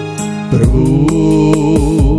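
Devotional song: held keyboard chords over a light beat of about two hits a second. About half a second in, deep bass and a sung melody line with vibrato come in and the music grows louder.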